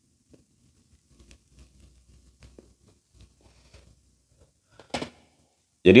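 Faint scattered rustling and small ticks of movement close to a lapel microphone, with a brief louder rustle about five seconds in, then a man starts speaking just before the end.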